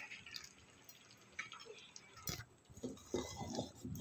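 Faint kitchen handling sounds: a few soft clicks and taps as kewra water is sprinkled from a small plastic bottle, then a steel ladle starting to stir thick kheer in a steel pot in the last second or so.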